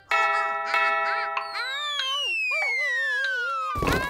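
Cartoon sound effects: a clock chime rings out, then a long falling slide-whistle glide with wobbling tones under it, ending in a crash of tumbling cardboard boxes near the end.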